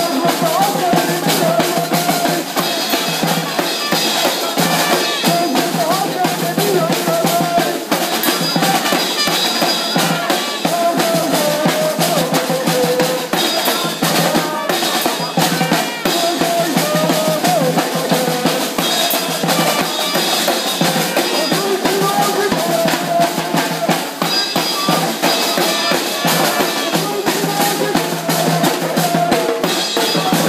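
Snare drums beaten in a fast, steady marching rhythm, with a voice shouting chants through a megaphone over the drumming.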